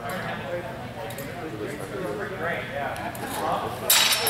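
Low background talk in a large hall, then near the end one sharp clash of training longswords, with a brief ring after it.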